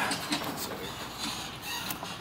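Steady background hiss with one short, quiet spoken word about half a second in.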